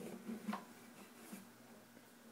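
Faint handling noise from an acoustic guitar being shifted: a few soft knocks and rustles over a steady low hum, with no strumming.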